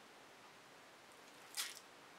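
A squeeze bottle of black acrylic paint giving one short squishy sputter about one and a half seconds in, as paint and air are pushed out of its nozzle; otherwise near silence.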